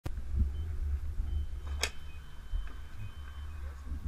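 Fuel pump keypad beeping as buttons are pressed: a few short high beeps and one longer steady beep lasting about two seconds, with a sharp click just before the two-second mark, over a low rumble.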